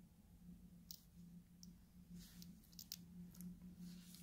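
Near silence: a faint steady hum, with a few soft clicks from a stone-set ring and earrings being handled in gloved fingers.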